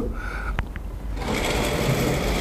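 A curtain being drawn open along its track: two light clicks, then from about a second in a steady, even rattle of the runners sliding along the rail.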